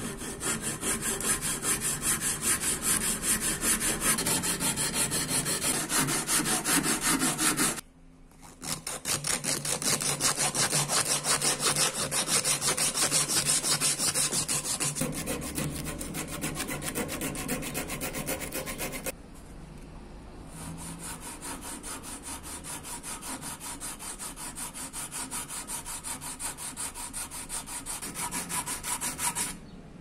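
Hand file rasping over the wooden handle scales of a full-tang karambit in quick, even back-and-forth strokes, shaping the wood flush with the steel. The filing stops briefly about eight seconds in and again near twenty seconds.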